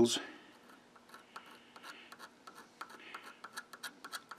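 Pointed steel scriber scratching the end of a bar of unknown metal: a run of faint, irregular scrapes and ticks. It is a hardness test, and the metal scratches easily.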